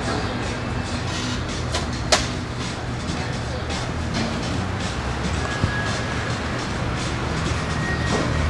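Outdoor café and street ambience: a steady low rumble of traffic with indistinct voices and faint music, and a single sharp click about two seconds in.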